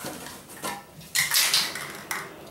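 Metal spray paint cans knocking and clinking against each other as they are handled in a cardboard box, with the loudest clatter about a second in.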